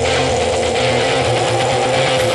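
Background music holding a single steady note over a low hum.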